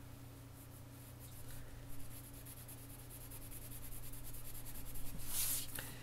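Watercolour pencil scratching on paper in rapid shading strokes, over a faint steady hum. The scratching swells briefly about five seconds in.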